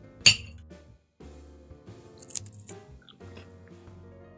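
A metal fork clicks sharply once against a plate as it stabs into a pile of dehydrated insects, then about two seconds later a few crunches of someone chewing the dried bugs. Soft background music runs underneath.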